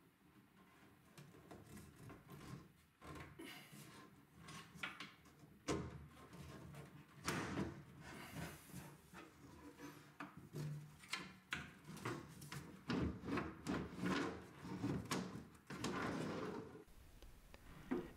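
Wooden glass-paned barrister bookcase door being worked back into its case: scattered light knocks and wood-on-wood rubbing as it is eased into the side slots and swung up into place. The knocks and scraping come thicker in the second half.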